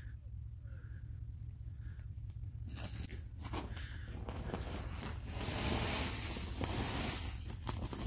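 Woven plastic sack rustling and crinkling as chipped straw-and-manure mulch is shaken out of it onto a compost pile, starting about three seconds in and getting louder near the end.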